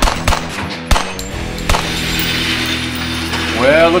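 Pistol shots from two shooters: four sharp cracks in the first two seconds, irregularly spaced, the loudest about a second in.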